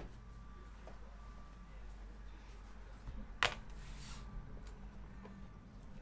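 Quiet room with a low steady hum and light handling noises: one sharp click about three and a half seconds in, then a brief rustle.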